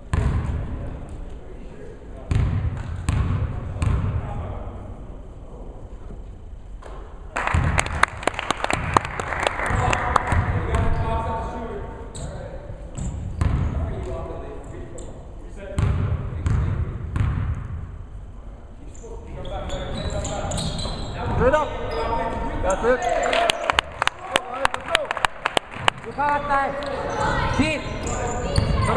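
A basketball bouncing and being dribbled on a hardwood gym floor, heard as repeated sharp knocks and thuds, with voices calling out in the gymnasium.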